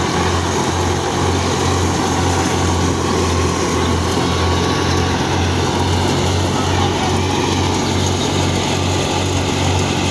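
Tractor-driven wheat thresher running steadily under load. The drum and fan make a continuous mechanical din over the tractor engine, with a low throb pulsing about twice a second.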